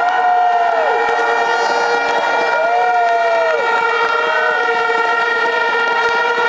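Horns blown in a rally crowd: one steady blaring tone held throughout, with other horn tones swooping up and falling back over it every second or two.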